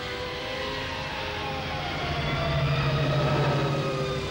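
Spaceship engine sound effect passing by, its pitch falling, with a low rumble that swells in the second half, over an orchestral film score.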